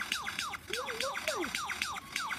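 Male superb lyrebird in full display, pouring out a rapid run of mimicked, alarm-like notes. Each note sweeps sharply downward, about five a second, with a lower gliding note near the middle.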